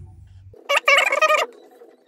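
A loud, high-pitched cry with a wavering pitch, lasting under a second, then a shorter one near the end.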